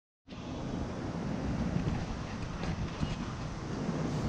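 Wind buffeting the camera's microphone outdoors: a steady low rushing rumble that starts a moment in.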